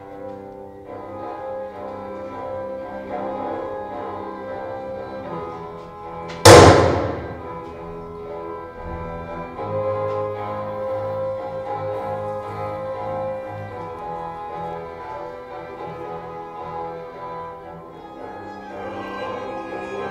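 Contemporary chamber music with sustained instrumental tones. About six and a half seconds in, a single loud percussive strike rings out and dies away over about a second.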